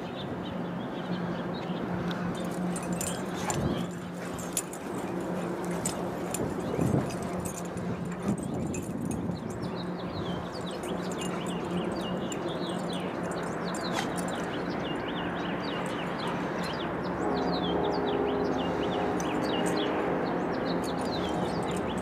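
Small birds chirping again and again, thickest in the middle stretch, over a steady outdoor background noise and a low steady hum; a fuller droning tone with several pitches joins near the end.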